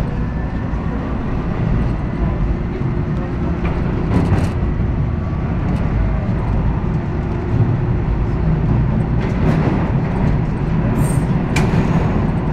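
TTC H6 subway car running through a tunnel: a steady loud low rumble of wheels on rail, with a few brief sharp clicks about four seconds in and again near the end.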